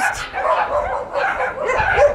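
Dogs vocalizing excitedly, with yips and whines whose pitch bends up and down.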